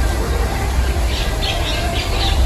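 A bird gives a quick run of short, high calls, about five of them, starting about a second in, over a steady low rumble.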